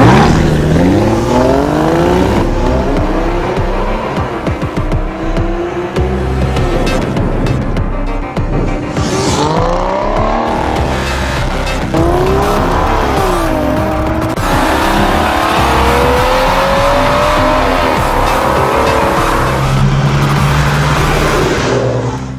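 Aston Martin DB9's V12 engine firing up with a sudden loud flare of revs, then revving hard under acceleration, its pitch climbing and dropping again several times as it runs up through the gears.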